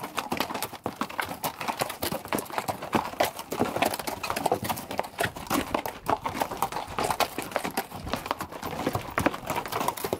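Hooves of a string of pack mules clopping on a rocky trail as they walk close past, a dense, irregular run of steps.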